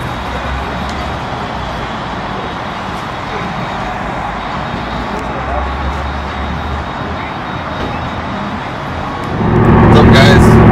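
Steady motor vehicle noise, an engine running at idle with traffic around it. About half a second before the end it jumps sharply louder.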